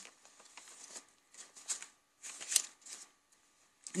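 Faint rustling of paper as a small handmade journal booklet of vintage paper pages is handled and folded shut, in a few short bursts.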